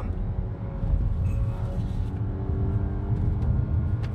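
Cupra Ateca's 2.0-litre turbo four-cylinder and tyres heard from inside the cabin while driving: a steady low rumble of engine and road noise with a faint engine hum.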